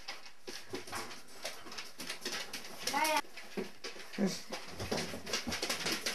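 A dog whining briefly, one short rising-and-falling whine about three seconds in, amid rustling and light clicks.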